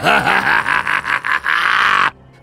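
A man's long villain's cackle: a string of quick laugh pulses with a harsh, rasping edge.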